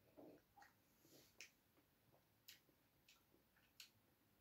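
Near silence with a faint sip from a small glass near the start, then three faint, evenly spaced short clicks from the taster's mouth as the spirit is tasted.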